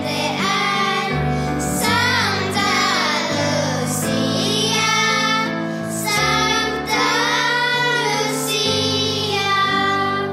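Children's voices singing a song over a steady instrumental accompaniment of held low notes.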